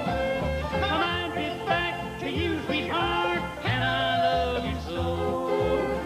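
Bluegrass band playing an instrumental passage: quick mandolin and acoustic guitar lines over a bass note on each beat.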